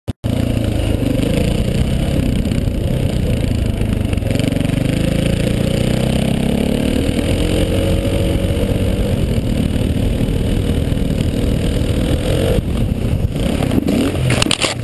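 KTM 450 XC-W's single-cylinder four-stroke engine running under throttle, its pitch climbing steadily through the middle, then falling away suddenly about a second and a half before the end as the bike slides out on slick ground.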